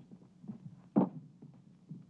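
Footsteps on a hard floor: a few soft thumps, one louder about a second in, over a steady low hum.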